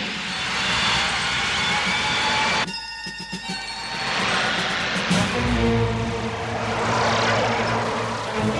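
Cartoon sound effect of a space fighter's engine rushing past, mixed with dramatic background music. The rush drops away briefly about three seconds in, then swells again as the fighter flies on.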